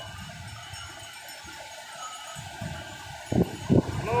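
Sea surf breaking on a sandy beach, a steady low rumble with wind on the microphone, and two short loud bumps near the end.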